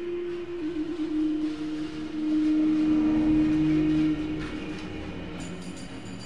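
A motorised rail trolley running along the track, its wheel rumble blended with a steady droning tone. The drone swells about two seconds in and drops away about four seconds in.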